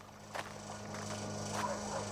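Faint short dog whimpers over a low steady hum, the sound slowly growing louder.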